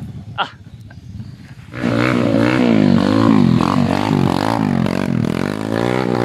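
Dirt bike engine revved hard from about two seconds in, its pitch rising and falling over and over as the rider struggles for grip climbing a slippery muddy slope.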